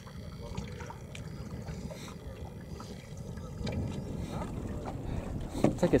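Wind rushing over the microphone with choppy water lapping around a small fishing boat, a steady low rumble on open water.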